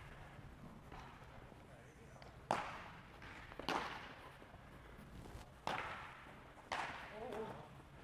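Four sharp smacks, irregularly spaced, each with a short echo in a large indoor hall: baseballs popping into leather fielding gloves during ground-ball and throwing drills.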